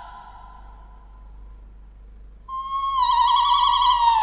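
A woman's voice sings a long, high held note in an operatic style. It enters suddenly about two and a half seconds in, after a fading echo of the previous note, and soon takes on a wavering vibrato.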